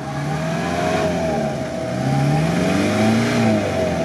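Off-road 4x4 engine revving under load, its pitch rising and falling, while a vehicle bogged in deep mud is pulled out on a tow line.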